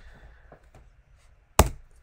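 A single sharp knock about one and a half seconds in, dying away quickly after a quiet stretch.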